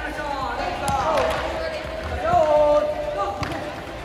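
Soccer balls being tapped and bounced by children's feet on a hard indoor court, a scatter of short knocks, under a coach's and children's voices, with one held call out loud about two and a half seconds in.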